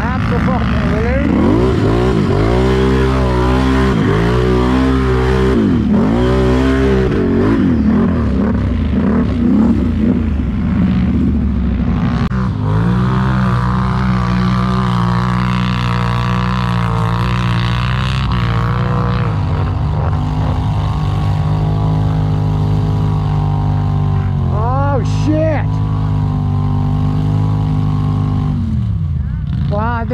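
ATV engine heard from on board, revving up and down repeatedly over the first several seconds as it is ridden through the rutted field, then holding a steady speed. A brief higher rev comes about three-quarters of the way through, and the engine winds down near the end.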